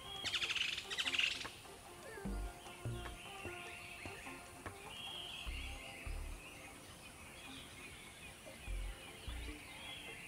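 Wild birds chirping and singing, with a rapid trill in the first second and a half, over a soft music bed with slow, low bass notes.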